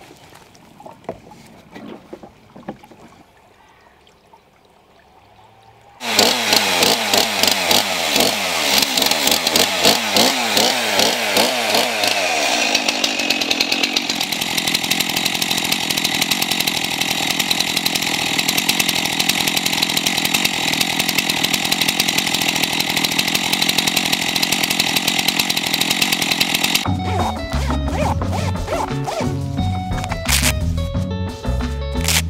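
Stihl two-stroke chainsaw coming to life about six seconds in, revving up and down, then running steadily at high revs. Music with a beat comes in near the end.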